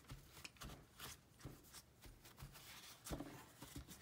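Faint rustles and soft taps of a paper towel being pressed and dabbed onto card stock, blotting still-damp ink, with a slightly stronger tap about three seconds in.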